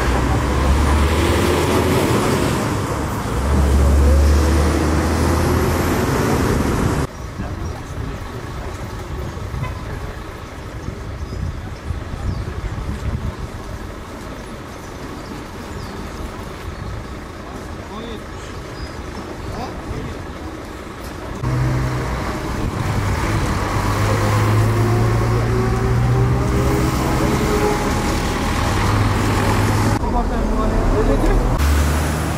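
Motor vehicle engines running and passing in street traffic, with voices underneath. The sound drops suddenly about seven seconds in to a quieter steady hum, then comes back loud with engine noise about two-thirds of the way through.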